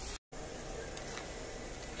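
Faint steady background hiss, broken just after the start by a split-second dropout to total silence at an edit cut.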